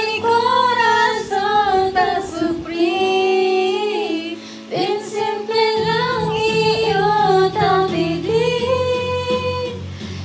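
A woman singing into a handheld microphone over a low, sustained instrumental accompaniment. She holds long notes and slides between pitches, and the accompaniment changes chord about six seconds in.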